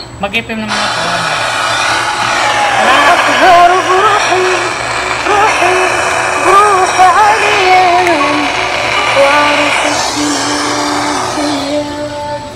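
Music with a wavering singing voice playing from a small portable speaker, starting just under a second in. The upper part of the sound falls away near the end.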